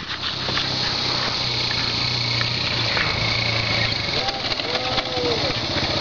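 Small engine of a child's four-wheeler running steadily, with a low hum that fades after about four seconds. A brief faint voice comes in near the end.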